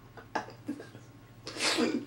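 A person's loud, breathy vocal outburst starting about one and a half seconds in, after a few faint short sounds.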